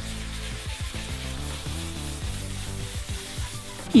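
Background music over the soft, steady rubbing of wet sandpaper worked by hand on a plastic headlight lens.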